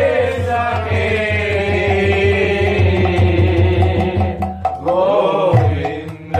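Devotional kirtan chanting: voices singing a long-held mantra phrase over a low, steady rhythmic pulse. The phrase breaks off about four and a half seconds in, and a new one begins.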